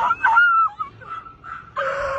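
People screaming and shouting in high, strained voices, the pitch bending up and down. The cries break off after about half a second, come in short scraps through the middle, and swell again near the end.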